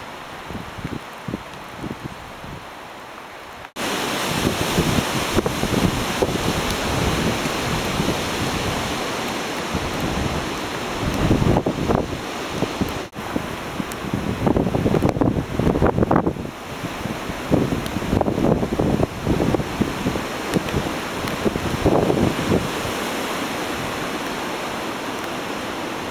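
Hurricane wind gusting through pine trees and buffeting the microphone. It gets much louder suddenly about four seconds in, then comes in repeated strong gusts.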